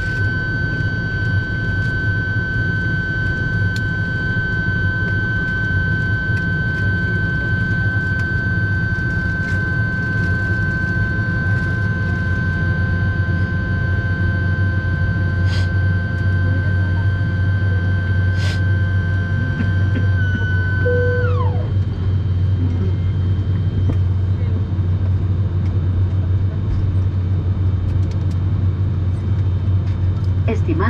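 Steady low hum inside the cabin of an ATR 72-600 parked at the gate, with a high whine over it that drops sharply in pitch and cuts off about 21 seconds in.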